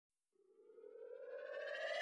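Siren-like rising tone with several overtones, fading in from silence about a third of a second in and slowly climbing in pitch and loudness: a riser effect building into the intro of a hip hop track.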